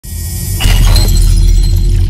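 Sound effect of glass shattering, a sudden glittering crash about half a second in with ringing glassy tones after it, over a loud, steady deep bass rumble.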